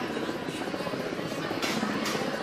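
Indistinct voices over a steady background drone, with a short hiss about three-quarters of the way through.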